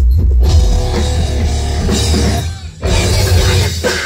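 Live rock band playing loud, with electric guitar and a drum kit over a heavy low end. The band drops out briefly about two and a half seconds in, then comes back in at full volume.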